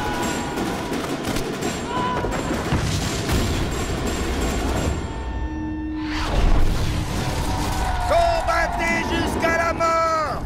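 Film-trailer soundtrack: orchestral music under battle sound of volleys of rifle fire for the first half, then the mix thins abruptly and a deep boom hits about six seconds in. Near the end, voices shouting or chanting in stacked, sliding tones rise over the music.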